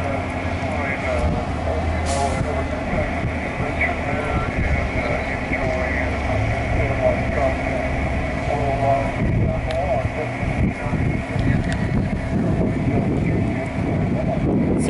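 Faint, muffled voice of the other station replying over the FO-29 amateur radio satellite, coming from the operator's radio audio, over a steady low rumble.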